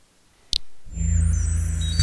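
Second Life teleport-pad sound effect: a short click, then from about a second in a synthesized teleport sound, a deep steady hum under shimmering high tones.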